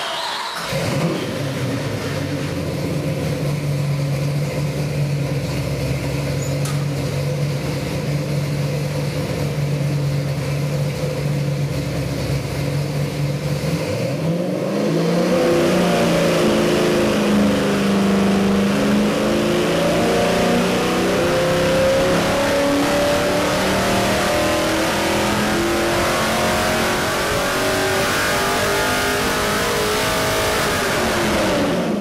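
Ford 347 stroker small-block V8 running on an engine dyno. It holds a steady speed for about fourteen seconds, then pulls under load in a sweep test, rising steadily in pitch and louder from about 3,600 to about 6,300 rpm over the last fifteen seconds.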